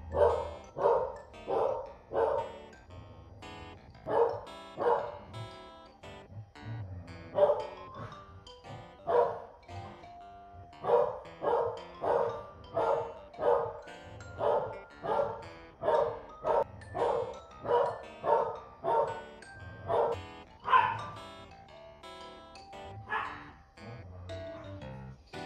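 A corgi barking repeatedly, in runs of quick barks at about one and a half a second with short pauses between the runs. Two louder, higher barks come near the end.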